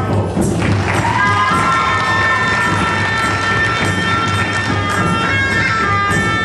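Shrine oriental band playing: a reedy horn carries the melody over hand drums and timbales. The horn note breaks off at the start, glides up about a second in, then holds a long note.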